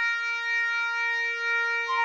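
Synthesized bagpipe from score-playback software, holding one long steady note.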